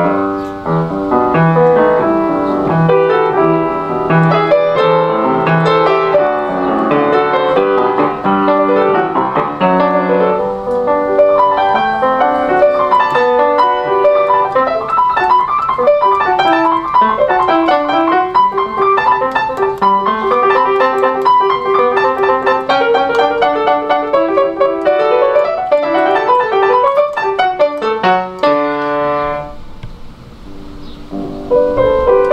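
Solo grand piano playing a classical piece in continuous running notes. A quick rising run comes shortly before a brief break near the end.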